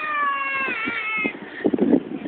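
A long, high-pitched wailing cry that slides slowly down in pitch, wavers and stops a little over a second in. A few short knocks and rustles follow near the end.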